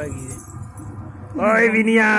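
Light jingling, then about one and a half seconds in a loud, drawn-out vocal sound from a person begins, held on one wavering pitch.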